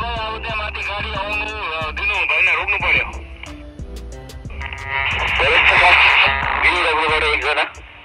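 A voice coming through a Baofeng handheld walkie-talkie in two stretches, thin and narrow in tone, over background music.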